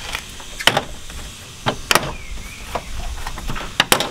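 Plastic push-pin clips popping out of a car's plastic radiator shroud as they are pulled straight up: three sharp snaps, with smaller plastic clicks between them.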